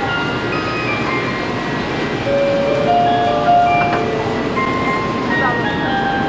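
Shinkansen platform departure melody: a simple electronic tune of single held notes played over the station speakers, signalling that the train is about to leave. Steady platform and train noise runs beneath it.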